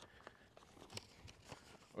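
Near silence with a few faint footsteps on a dirt and gravel road.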